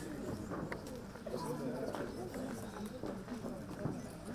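Quiet murmur of people's voices in the background, with a bird calling.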